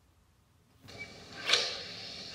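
Near silence for almost a second, then the restarted music video's sound comes in: a soft steady rush with a sharp click about a second and a half in, just before the song begins.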